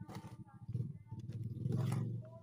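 Small hand trowel scraping and scooping loose potting soil, twice, about a second and a half apart, over a low rumble that swells near the end.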